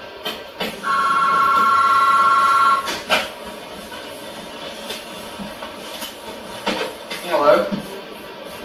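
Electronic telephone ringer: a warbling two-tone ring starts about a second in and lasts about two seconds, the loudest sound here. A sharp knock follows just after it.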